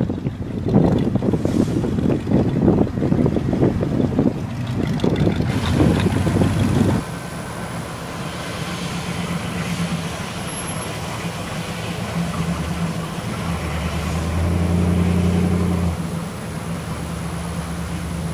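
Wind buffeting the microphone for about the first seven seconds. After that, a vintage pickup truck's engine runs steadily at low speed as the truck rolls slowly past, louder for a couple of seconds near the end.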